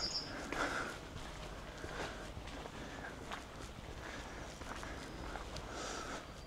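Soft footsteps of a person walking along a dirt path at a steady walking pace.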